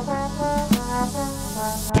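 Instrumental house and hip hop music with slow, sustained horn chords over a light beat. A rising noise swell builds near the end.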